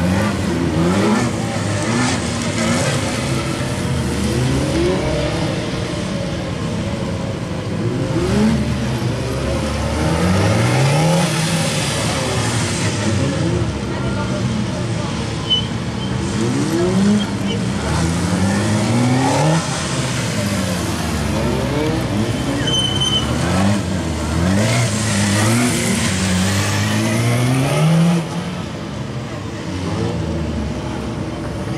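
Motorcycle engine revving up and down over and over as it is ridden through tight turns around cones, its pitch rising and falling every second or two.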